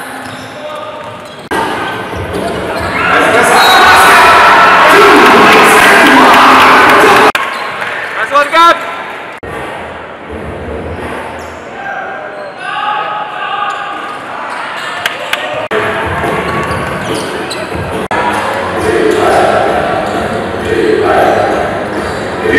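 Basketball game in an indoor arena: a basketball bouncing on the hardwood court amid voices and noise echoing through the large hall. The hall gets much louder from about three to seven seconds in.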